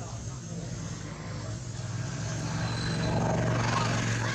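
A low, steady engine drone that grows louder through the second half.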